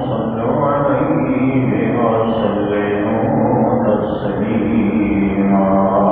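A man chanting a slow, melodic religious recitation, holding long notes.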